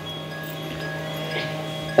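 A held musical drone: a few steady tones sustained evenly under a pause in the talk, with no rhythm or melody.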